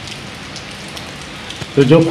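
A steady hiss of background noise with a few faint ticks, during a pause between a man's sentences; his speech resumes near the end.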